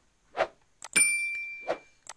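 Subscribe-button and notification-bell animation sound effect: a soft thud, then a click about a second in with a bell ding that rings for about a second, and another soft thud near the end.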